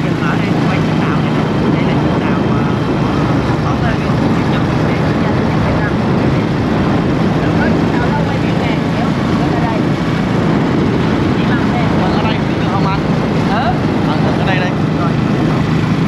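Motorbike engine running steadily as the bike rides along, with wind rushing over the microphone in a loud, even roar.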